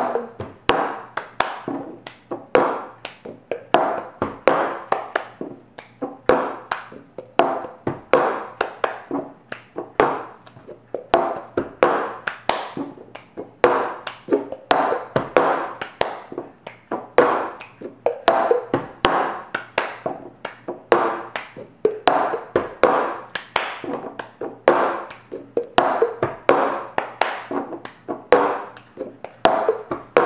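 Cup-game rhythm: hands clapping, palms tapping the tabletop, and a plastic cup being flipped, passed and struck down on the table. The strikes come several a second in a steady repeating pattern.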